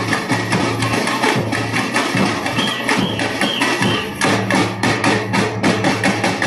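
Live samba band playing an instrumental passage: a fast, driving percussion rhythm of drums and hand percussion over a steady low bass, with a brief high sliding tone about halfway through.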